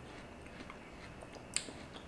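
A person chewing a mouthful of crisp Honey Kiss melon: faint crunching clicks, with one sharper crunch about a second and a half in.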